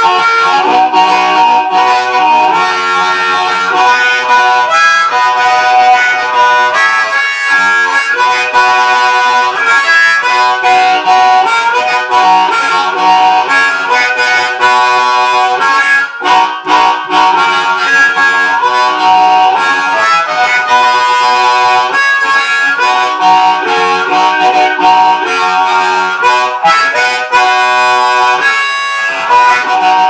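Hohner Blues Harp MS harmonica in the key of B, played through a Green Bullet microphone into a small Acoustic G10 guitar amplifier: a continuous run of amplified notes and chords with a brief gap about sixteen seconds in.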